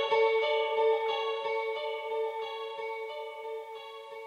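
End of an indie post-punk song: a guitar chord rings out with soft picked notes over it, steadily fading away.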